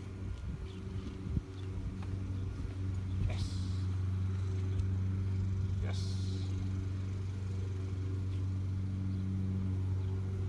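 A steady low engine hum from a motor vehicle running nearby, growing a little louder over the first few seconds and then holding. Two short hissy noises come about three and six seconds in.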